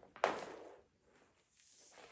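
Yellow extension cord coil dropping and swinging: one soft thud and swish about a quarter second in that fades over about half a second, then a faint rustle of cord moving near the end.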